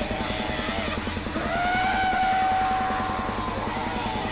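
Black metal / noise-core band playing: fast, dense drumming and distorted guitar, with a long high held note coming in about a second and a half in.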